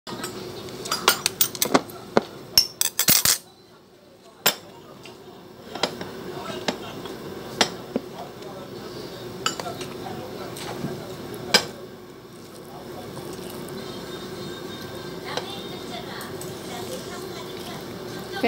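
Tableware clinking and tapping against a china plate during a meal: a quick run of sharp clinks in the first few seconds, then single taps every second or two, over a steady low hum.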